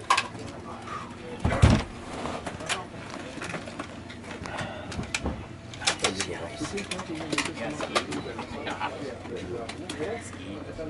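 A metal emergency exit hatch being lifted out of an aircraft's fuselage and set against the cabin wall: a heavy clunk about one and a half seconds in, then scattered knocks and clicks of metal as it is handled, with voices in the background.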